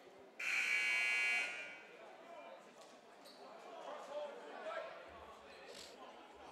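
Gymnasium scoreboard buzzer sounding once, a harsh buzz that starts suddenly and lasts about a second, signalling the end of a timeout. Voices murmur in the gym after it.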